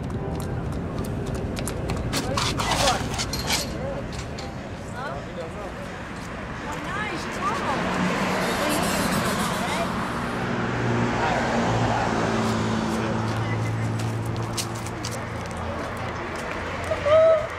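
Indistinct voices over outdoor street noise, with a low steady hum in the second half.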